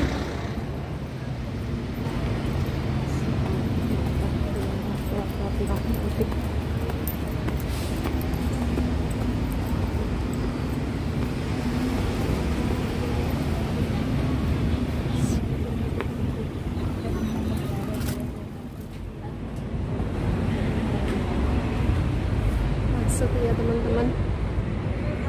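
Busy city street ambience: a steady rumble of road traffic mixed with the voices of people around.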